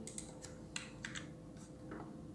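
Faint background with a steady low hum and a few soft, scattered clicks.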